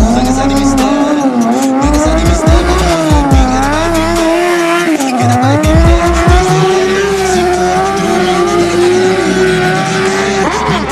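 A sport motorcycle's engine held at high revs, its pitch rising and falling with the throttle, while the rear tyre spins and squeals in a smoking burnout drift.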